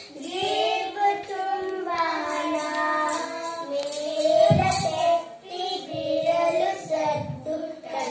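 A small group of children singing a song together into microphones, with a few low thumps in the middle and later part.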